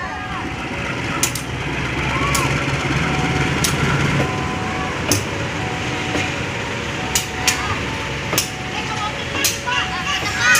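KAI CC 203 diesel-electric locomotive rolling slowly past at close range while shunting, its engine rumble swelling around the middle, with sharp clicks now and then.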